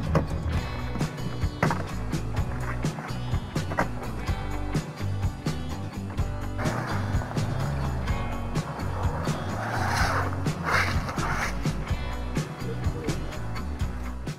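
Background music with a steady beat and a bass line. A broader rushing noise rises under it in the second half.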